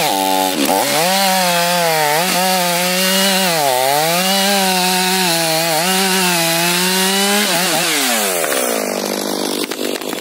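STIHL MS 500i two-stroke chainsaw at full throttle sawing through a fir trunk, its pitch dipping and recovering as the chain bogs under load. About seven and a half seconds in the throttle is released and the engine winds down, and near the end the cut-through trunk starts to crackle as it begins to tip.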